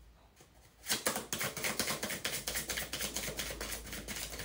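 A deck of tarot cards being shuffled by hand: a fast, continuous run of card clicks and flutter that starts about a second in.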